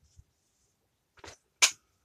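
Mostly quiet, with a faint tap a little after one second and then a single sharp click just past one and a half seconds.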